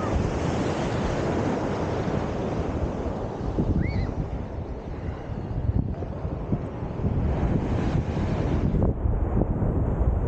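Sea water lapping and splashing right against a camera held at the surface by a swimmer, with wind buffeting the microphone.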